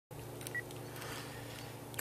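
Quiet background with a faint steady low hum and a faint click about half a second in.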